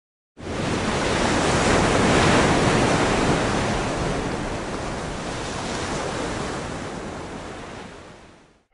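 Rushing, wind-like noise sound effect that starts suddenly, swells over the first two seconds, then slowly fades away.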